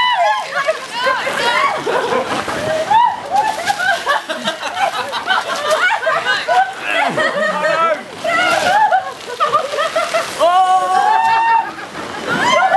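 Voices shouting and calling out excitedly over the splash and slosh of water as people slide across a wet plastic slip 'n slide sheet.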